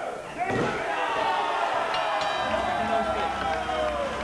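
A thud on the wrestling ring's mat about half a second in, followed by several spectators shouting over one another.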